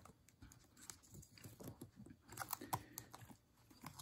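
Faint, irregular small clicks and ticks of a piston ring being worked by hand over plastic guide strips into the top groove of an oiled piston.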